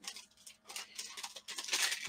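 Foil trading-card pack wrapper crinkling as cards are slid out of it by hand, in short scattered rustles that grow loudest near the end.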